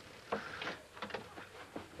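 A handful of light, scattered knocks and clicks, about six in two seconds, over quiet room tone.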